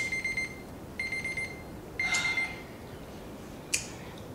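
Smartphone countdown timer alarm going off: three high, buzzy beeps about a second apart, each about half a second long, marking the end of a two-minute time limit. A single sharp click follows near the end.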